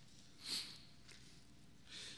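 Bible pages being leafed through at a pulpit, quiet overall, with one short breathy swish about half a second in.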